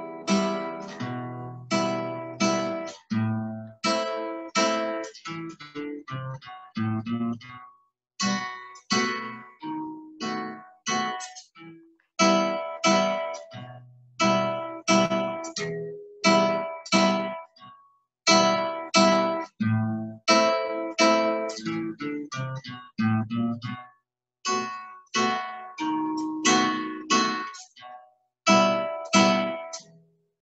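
Nylon-string classical guitar played through as a full strummed rhythm, single bass notes alternating with chords at about two to three strokes a second. Heard over a video call, the sound cuts out for an instant between some phrases.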